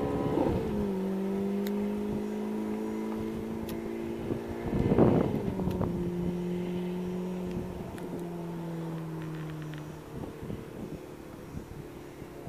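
Ferrari F430 Spyder's V8 engine pulling away and fading into the distance. Its note drops with an upshift about half a second in, and again after a louder rush of noise about five seconds in.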